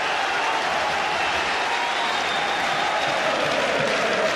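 Large football stadium crowd applauding and cheering, a steady noise with no break.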